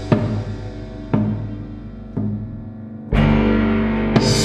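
Live electro-acoustic chamber ensemble playing an instrumental passage. Struck accents come about once a second, each ringing and fading over held low notes, and a louder, fuller chord enters about three seconds in.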